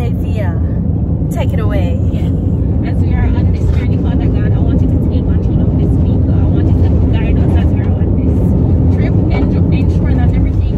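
Steady low road rumble of a car driving, heard inside the cabin, with faint voices over it.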